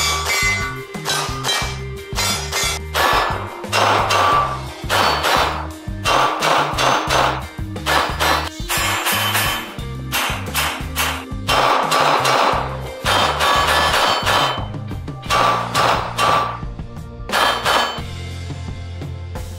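Handgun shots fired in quick strings of several, over background music with a bass line.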